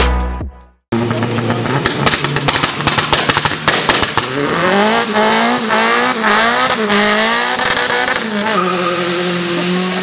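Background music fades out, and after a short gap a car engine revs hard with sharp crackles, its pitch bouncing up and down and then held high and climbing slowly, with tyres spinning in a smoky burnout.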